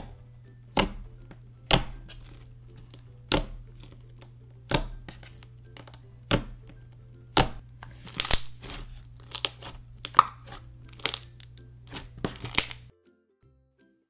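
Freshly reactivated glossy slime (glue and acrylic paint) being pressed and kneaded by hand, making sharp sticky pops and crackles. They come about once a second at first, then in quick clusters in the second half, and stop about a second before the end.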